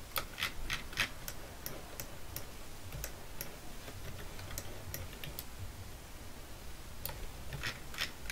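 Irregular sharp clicks of computer input at a desk, from mouse buttons and keys: several in quick succession in the first second, a few scattered through the middle, and another cluster near the end.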